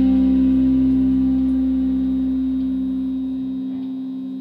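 A rock band's closing chord on distorted electric guitars, held and ringing out as it slowly fades. The lowest notes drop out near the end, leaving the guitar tone sustaining.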